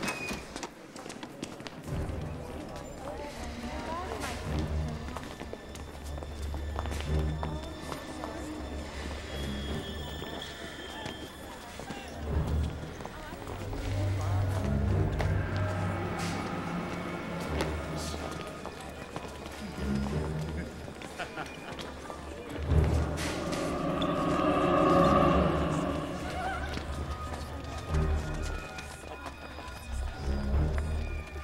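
Film soundtrack music with a steady bass pulse and a voice over it, swelling loudest about three-quarters of the way through.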